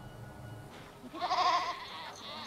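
A goat bleating: one loud, wavering call about a second in, preceded by a low hum.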